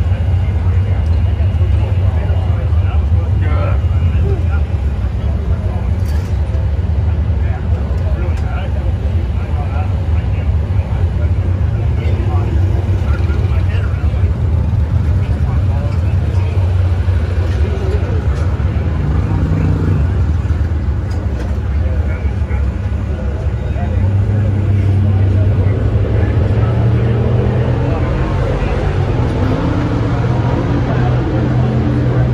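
A nitro drag-racing engine idling steadily during its warm-up, heard muffled as a deep, even hum. It grows a little louder near the end.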